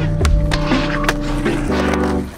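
Skateboard rolling on concrete, with a few sharp clacks of the board at uneven moments, over background music with sustained tones.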